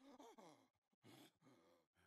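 Near silence, with only a very faint voice barely there.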